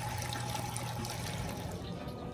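Water trickling steadily through an aquaponics grow bed of expanded clay pebbles, with a low hum underneath that fades out a little past halfway.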